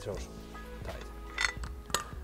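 Background music with a steady beat, and a few light metal clinks from steel tool parts being handled: a hole saw, a chuck and loose pins. The clinks come in a small cluster about a second and a half in and again near the end.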